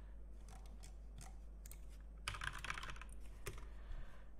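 Faint typing on a computer keyboard: a few scattered keystrokes, then a quick run of them a little past halfway.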